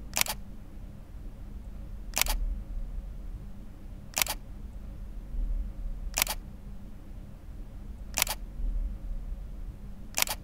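Camera shutter clicking five times, once every two seconds, each click a quick double snap, over a faint steady low hum.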